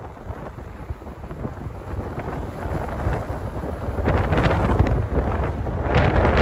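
Wind buffeting an outdoor microphone: a rough, uneven rumble that swells louder over the first few seconds.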